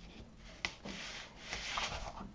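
Sheets of watercolour paper being handled and slid across one another by hand: a sharp tap a little after half a second in, then rubbing and rustling as a sheet is moved.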